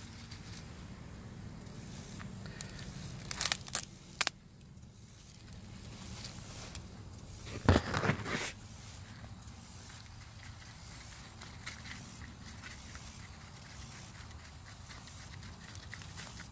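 Corn husk leaves rustling and tearing as an ear of corn is stripped by hand and shaken. It comes in a few short bursts, the loudest about eight seconds in, over a low steady background rumble.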